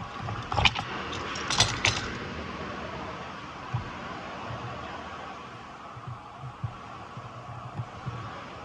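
Handling noise from a hand tool and a wooden block: a few sharp clacks and a brief rattle in the first two seconds, then scattered soft knocks and bumps as the wood is moved.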